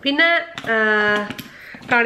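A woman speaking: a short word, then one syllable drawn out at a steady pitch for most of a second.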